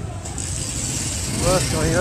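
Low steady rumble of street traffic, with a man's voice calling out near the end.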